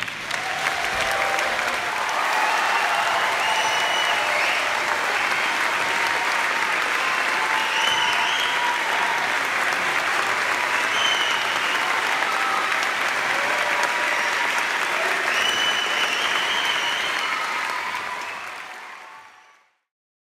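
Concert audience applauding steadily, with scattered voices calling out over the clapping; the applause fades out near the end.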